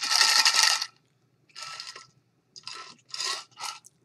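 Ice cubes rattling and clinking inside a stainless steel tumbler of iced coffee as it is shaken: one loud rattle about a second long, then four shorter, quieter rattles.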